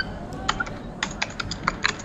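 Typing on a computer keyboard: about a dozen irregular key clicks, coming faster in the second half.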